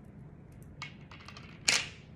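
Handling noise: a few light clicks, then a short sharp snap near the end.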